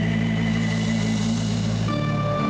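Live dance-band music: a held chord with steady sustained low notes, moving to a new chord near the end.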